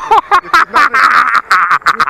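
Loud, hearty laughter in rapid repeated bursts.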